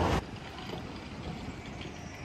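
Loud noisy rumble that cuts off suddenly just after the start, followed by a quieter, steady low rumble of city street traffic.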